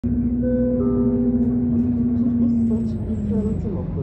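On-board stop announcement system of an Istanbul İETT city bus: a two-note descending chime, then a recorded voice starting the next-stop announcement, over the steady low rumble of the bus.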